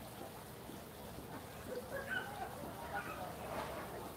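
Quiet background ambience: a low steady hum, with faint, indistinct sounds in the middle.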